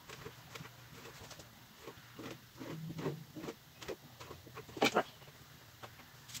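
Knife cutting soft rolled chickpea-flour cracker dough on a mat, and hands handling the cut pieces: scattered soft clicks and taps, the loudest about five seconds in.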